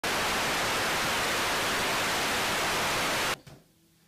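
Steady hiss of analog TV static, cutting off suddenly a little over three seconds in.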